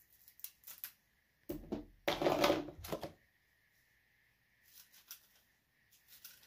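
A comb drawn through the hair of a human hair blend wig: a few short strokes, then a louder rustling stretch of about a second and a half, and a few faint strokes near the end.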